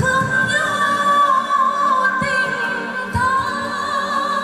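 A woman singing a Vietnamese song into a microphone over accompanying music, holding long notes with vibrato.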